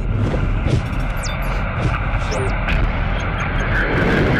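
Television news intro sound design: a steady deep rumble with sharp clicks and quick high sweeping whooshes, about a second in and again past the middle.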